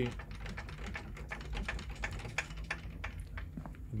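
Light, irregular clicking and clunking from a hot rod's loose front axle and radius-arm linkage being wiggled by hand. It is the sound of play in the front end, where the axle shifts back and forth: the looseness behind its death wobble.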